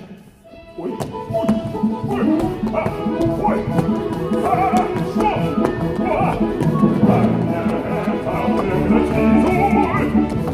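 Lively music for a stage dance number, starting about a second in after a brief hush.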